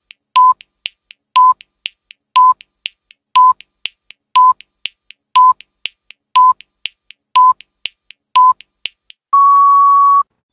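Electronic countdown-timer sound effect: a short beep every second with fainter ticks between, ending in one longer, slightly higher beep near the end.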